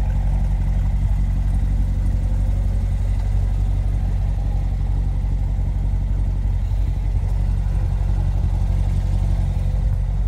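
Chevrolet Corvette C7's V8 engine idling steadily, with no revving.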